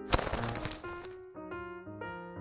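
Soft background keyboard music with slow held notes. Right at the start there is a short rustling burst of noise lasting about half a second.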